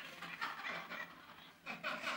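Audience laughing in response to a joke, fairly faint and scattered, from many people at once.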